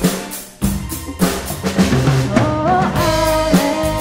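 A band's song with the drum kit to the fore: a drum hit and a brief break about half a second in, then drums and the band come back in with a steady beat and a melodic line over it.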